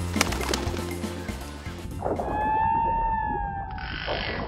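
Background music, then about halfway in a long cartoon whale call, one drawn-out tone falling slightly in pitch for about two seconds. A short whoosh of hiss starts just before the end.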